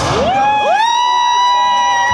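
Two spectators yelling long, high held cheers of support. Each voice slides up in pitch and then holds, the second joining about half a second after the first.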